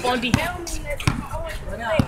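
A basketball dribbled on an outdoor asphalt court: several sharp bounces, with faint voices between them.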